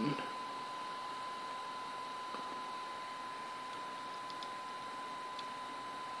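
Steady low recording hiss with a thin, constant tone running through it, and two or three faint ticks late on.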